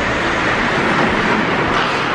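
Indoor ice rink during a hockey game: a steady, loud hiss of skates carving the ice.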